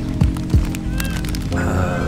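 Background music: sustained chords with a few low drum hits.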